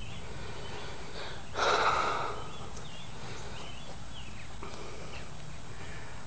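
Quiet outdoor background with one short breath close to the microphone about a second and a half in.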